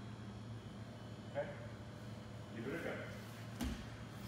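Grappling on a martial-arts mat: two brief, faint voice sounds, then a dull thud of a body on the mat near the end, over a steady low room hum.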